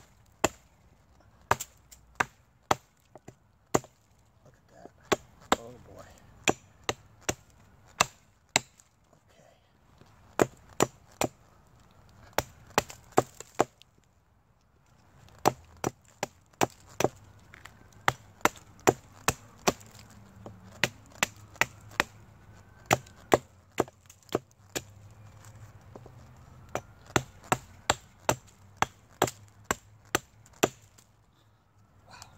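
A hatchet chopping at a resinous pine fatwood knot held on a log, trimming away the rotten outer wood in a long run of sharp strikes, about one or two a second, with a short pause about halfway.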